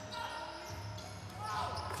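Live basketball game court sound: a ball dribbling and play noise echoing in a large arena, under a low steady background rumble. A commentator's voice comes up near the end.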